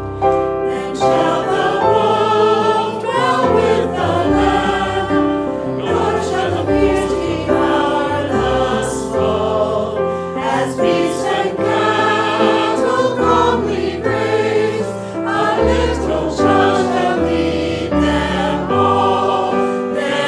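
Congregation singing a hymn together, accompanied by a digital piano, in steady held notes that move from note to note.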